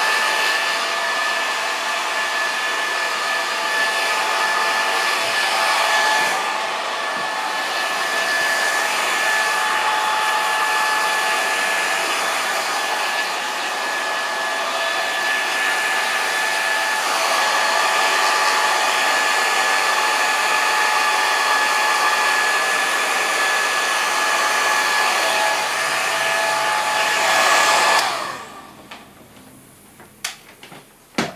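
Handheld hair dryer running steadily at full blow, its airflow with a high motor whine on top, as short hair is dried. It is switched off about two seconds before the end and winds down quickly.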